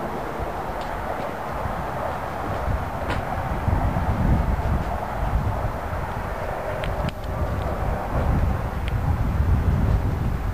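Outdoor background noise: a low, uneven rumble under a steady hiss, with a few faint clicks.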